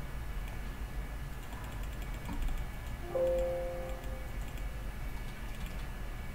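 Steady low hum with faint ticking. About three seconds in, a brief ringing tone of several pitches sounds and fades within about a second.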